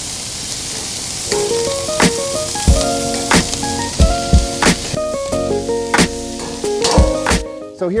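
Food sizzling on a hot propane grill as a steady hiss, joined about a second in by background music with a regular drum beat.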